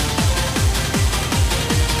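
Hard techno (schranz) DJ set playing: a fast four-on-the-floor kick drum, about two and a half kicks a second, each kick dropping steeply in pitch, under dense hi-hat and percussion.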